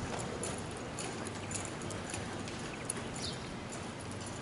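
Hoofbeats of an American Quarter Horse loping on soft arena dirt, a loose run of muffled footfalls.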